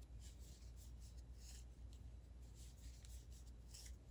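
Faint, soft scratching and rubbing of doubled yarn sliding over wooden knitting needles as stitches are worked by hand, a short stroke every half second or so.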